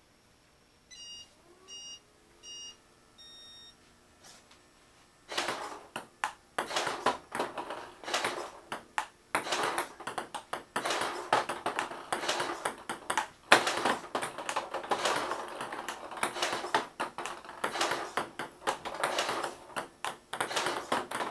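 Four electronic countdown beeps, three short ones and then a longer, higher one, followed from about five seconds in by a table tennis ball striking paddle and table in rapid, unbroken succession, a fast rally of sharp clicks.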